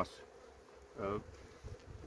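Steady hum of a honeybee colony in a hive that has just been opened, with a brood frame lifted out.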